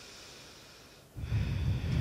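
A deep breath taken close to a microphone: a faint drawn-in breath, then about a second in a loud exhale with a rumble from the air hitting the mic.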